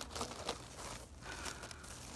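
Clear plastic zip-top bag crinkling as it is pulled open and handled, a scatter of soft crackles and rustles.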